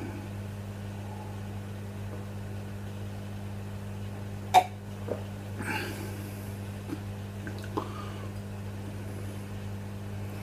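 A man tasting a sip of beer makes quiet mouth and throat sounds over a steady low hum: a short sharp smack about four and a half seconds in, a breathy exhale after it, and a couple of faint clicks later.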